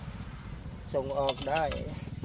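A man speaking a few words in Thai about a second in, over a faint, steady low rumble that runs underneath throughout.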